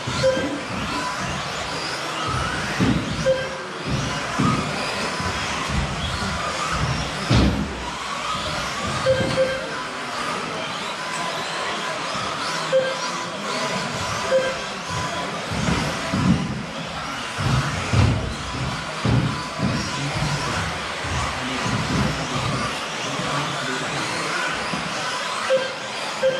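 1/10 scale electric RC off-road buggies racing on an indoor astroturf track, with irregular low thuds and short electronic beeps that recur every second or few. Music plays in the background.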